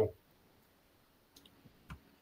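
A pause between two speakers on a video call: near silence, with a few faint clicks about halfway through and a sharper click just before speech resumes.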